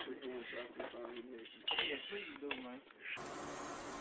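Faint, indistinct voices of several people talking and calling out, sounding muffled through a phone's microphone, with a few light clicks. About three seconds in the sound cuts abruptly to a steady hiss.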